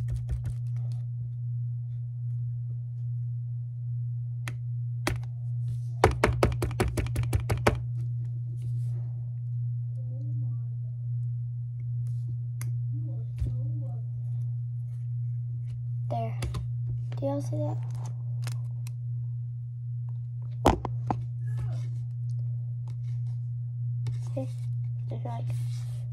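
Hands handling a plastic sand mold and homemade sand: scattered taps and knocks, with a quick run of rapid tapping about six seconds in. A steady low hum runs underneath, and there is soft murmuring in places.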